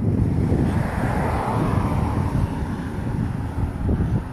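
Wind rumbling on a phone microphone outdoors, with a broad rushing noise that swells and fades over the middle few seconds.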